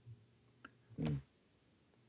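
A man's short, low 'hmm' about a second in, with a faint click just before it; otherwise quiet.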